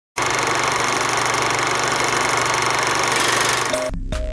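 A loud, steady, buzzy noise that runs under a TV station's animated logo ident. It cuts off suddenly near the end, as the first notes of a music theme come in.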